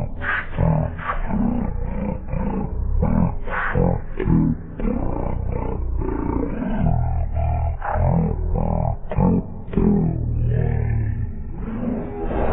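A loud, distorted, deep-pitched voice running in quick syllables, two to three a second, over heavy bass.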